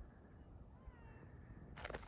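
Near silence, with a few faint, high chirping calls. Just before the end a sudden rush of noise begins as the phone is moved.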